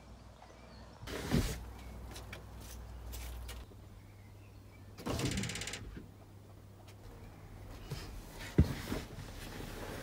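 Handling noises of a person getting into a car's driver's seat: a knock about a second in, a longer scraping rasp about five seconds in, and a sharp thump near the end.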